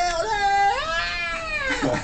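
A man's voice drawing out one long, high, strained "olé" as part of a chant. The note rises about a second in and falls away near the end.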